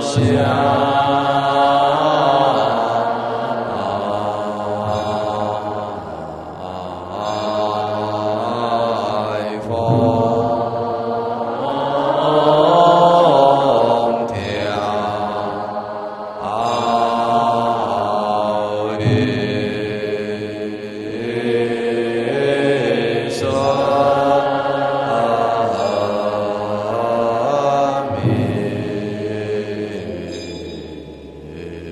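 Buddhist monastic assembly chanting a liturgical verse in unison during the morning service. The notes are slow and drawn out, in long phrases of about nine to ten seconds each.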